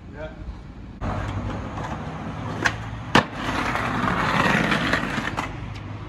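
Skateboard wheels rolling over stone paving, then a tail pop and, half a second later, a sharp slap as the board lands a backside 180 down a set of stone steps. The wheels roll on louder over the paving stones after the landing, and there is one more click near the end.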